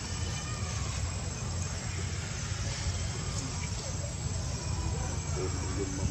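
A steady low rumble with faint voices in the background, and a few faint short calls near the end.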